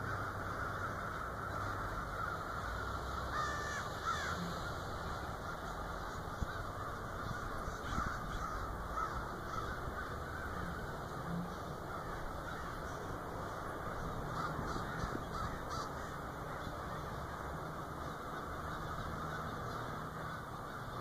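A large flock of crows in flight, many cawing at once, with the calls overlapping into a steady din.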